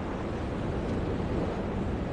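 Steady sea and wind ambience on a ship's deck: an even rushing noise, heaviest in the low range, with no distinct events.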